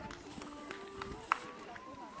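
Indistinct voices of people talking, with no clear words, and a single sharp click about a second and a half in.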